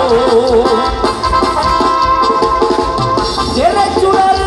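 Live Mexican banda music heard through an amplified outdoor sound system, a tuba and drums carrying the beat. The melody wavers at first, then holds one long high note before sliding up near the end.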